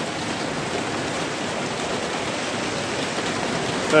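Heavy rain pouring down, a steady, even hiss of rainfall.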